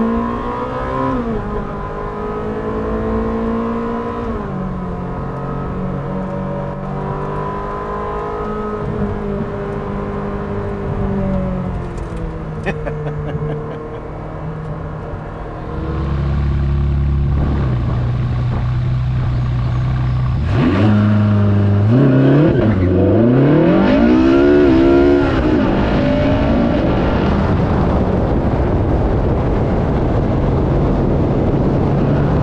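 Ferrari 458 Speciale's naturally aspirated 4.5-litre V8 under way, its revs climbing and then dropping sharply with each quick gear change. About halfway through it gets louder, with a deep low rumble. A little later the revs sweep up and down several times before settling.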